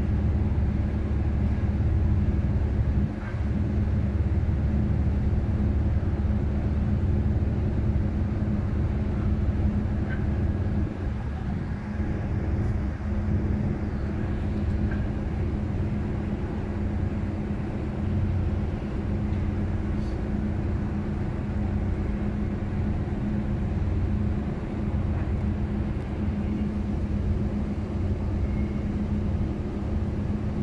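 Tugboat's diesel engine running, a steady low drone with a constant hum, and a few faint clicks here and there.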